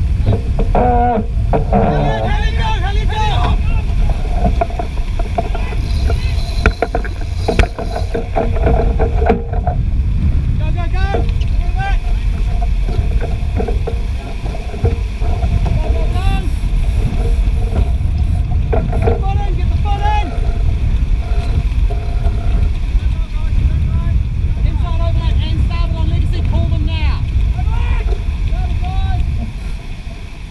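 Wind roaring on the microphone and water rushing along the hull of a Young 88 keelboat heeled hard over and sailing fast in strong wind, spray breaking off the bow. It is a loud, steady rumble, with crew voices calling out now and then.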